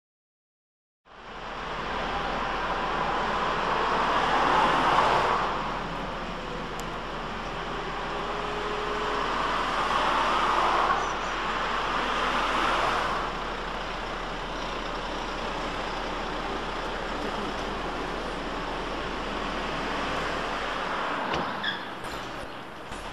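Street traffic noise from passing road vehicles. It starts about a second in, grows louder twice as vehicles go by, around five seconds in and again around eleven to thirteen seconds in, and otherwise stays steady.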